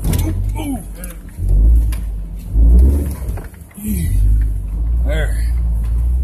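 A 4x4's engine rumbling in low gear as it crawls over large boulders, surging three times as it is given throttle and then pulling steadily, with a few knocks as the vehicle jolts over rock, heard from inside the cab.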